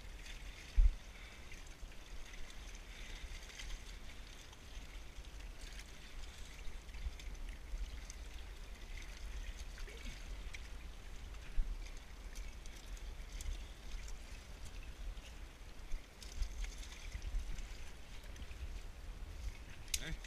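Lake water lapping and trickling among shoreline rocks, under a low rumble. There is a sharp thump about a second in and a few lighter knocks later.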